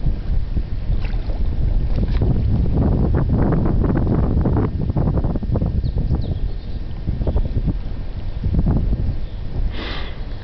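Wind buffeting the microphone in a steady, uneven low rumble, over the rush of flowing river water.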